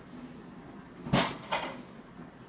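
Two sharp knocks about half a second apart, the first much louder with a dull thud under it, like a cupboard door or a hard object bumping shut.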